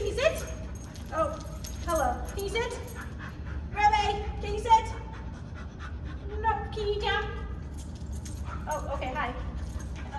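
A five-month-old retriever puppy panting, among short high-pitched coaxing calls from a woman's voice every second or two.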